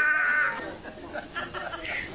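A short held whining voice cry, about half a second long at the start, followed by fainter scattered sounds.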